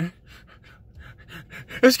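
A man's quick, quiet breathy puffs of breath, several short ones in a row.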